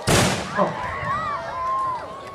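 A single loud salute shot fired by Cossack re-enactors, a sharp blast right at the start that echoes for about half a second. A crowd of children then cries out in high rising and falling voices.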